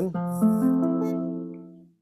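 Acoustic guitar playing an F major 7 chord, the flat-six chord of A minor: its notes come in one after another within the first half-second, then ring and fade away, dying out just before the end.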